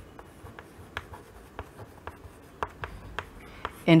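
Chalk writing on a chalkboard: faint, irregular taps and short scratches of the chalk as a word is written out.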